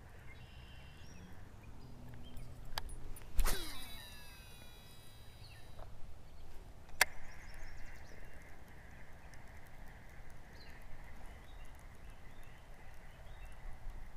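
A cast with a spinning rod: a sharp whip about three and a half seconds in, then the line running off the spool for about two seconds. A single click follows about seven seconds in, then a faint steady whir as the reel is cranked in.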